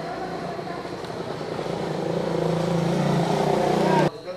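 A motor vehicle's engine running, growing steadily louder, cut off abruptly at the end.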